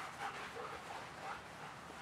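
Faint sounds from German shepherds at play: a run of short, soft dog breaths and small vocal sounds in the first second or so, then quieter.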